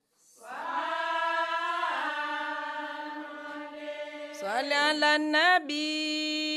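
A solo voice chanting: a long held note begins just after a brief silence, breaks into quick ornamented turns that bend up and down in pitch about four and a half seconds in, and settles onto another held note near the end.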